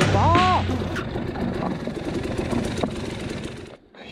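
Enduro motorcycle riding on a rocky trail: engine and rough riding noise with scattered clicks, fading away over a few seconds and cutting out near the end. A brief voice, rising then falling in pitch, sounds near the start.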